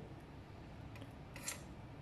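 A brief faint metallic click-and-rub about one and a half seconds in, as the handle of a hand-held copper pipe bender is released and swung open from a finished bend.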